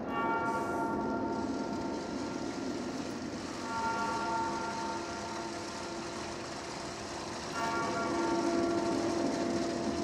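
A bell tolling slowly, three strikes about four seconds apart, each ringing on and fading before the next.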